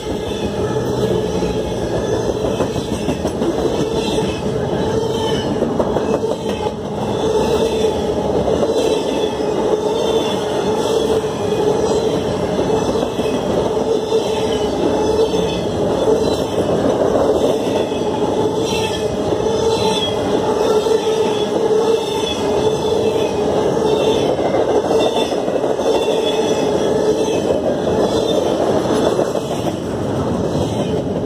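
An intermodal freight train's trailer and double-stack container cars rolling past close by: a steady, unbroken noise of steel wheels on rail with a steady hum and a faint repeating clatter.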